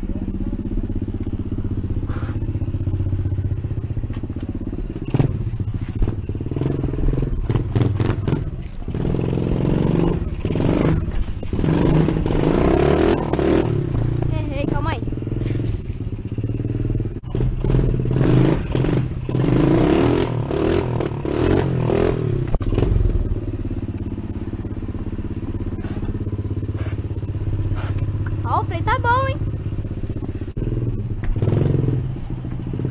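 ProTork TR100F mini motorcycle engine running throughout as it is ridden at low speed, rising and falling with the throttle, louder in two stretches in the middle with rattling mixed in.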